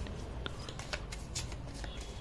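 A deck of tarot cards being shuffled by hand: an irregular run of light card clicks and flicks as the cards slide between the hands.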